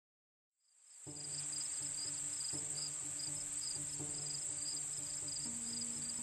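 Insects chirring: a steady high buzz with a quick pulsing chirp just below it. Underneath are soft sustained music chords that change about every second and a half. Both come in about a second in, after silence.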